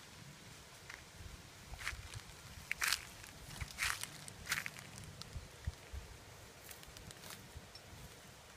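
Footsteps through fallen dry branches and leaf litter, with twigs crackling and snapping in a cluster of short, sharp cracks a couple of seconds in.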